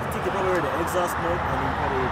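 Men talking quietly at close range over a steady low rumble of road traffic.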